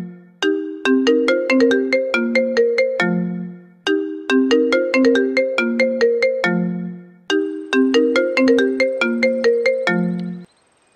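Mobile phone ringtone: a short melody of quick notes repeating three times, the sign of an incoming call, which stops just as the call is answered.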